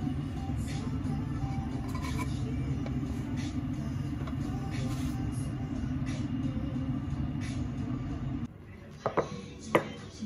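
A steady low rumble of kitchen background noise cuts off about eight and a half seconds in. Two sharp knocks follow, half a second apart, as a wooden plate of pancakes is set on a wooden table.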